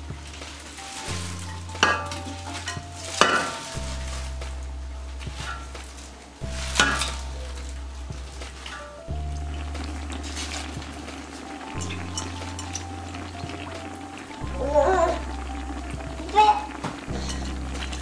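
Wet chopped collard greens rustling and crackling as they are dropped into a stockpot, with a few sharp clatters. Background music with a repeating bass line plays throughout.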